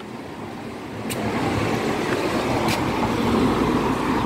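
A car driving by, its noise building from about a second in and holding steady, with a deeper rumble growing near the end; two faint clicks.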